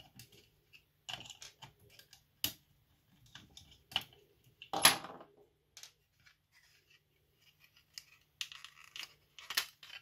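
Handling noise of a small plastic nail dryer being taken apart by hand: scattered light clicks and rubbing of plastic parts and wires, with one louder knock about five seconds in.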